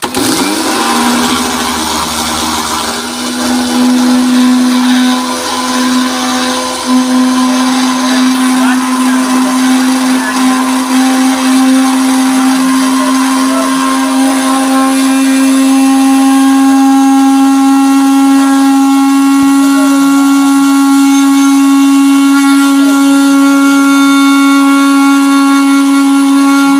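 Electric mixer grinder regrinding green chillies that were not yet ground fine, with some seeds still whole. The motor starts with a rougher, noisier sound, its whine climbs in pitch over the first several seconds, then it runs at a steady high whine.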